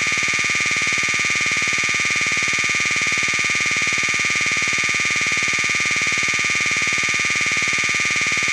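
Sustained synthesizer drone: a single, unchanging buzzing tone with a fine rapid pulse, left ringing on its own after the electronic track's beat and melody have stopped.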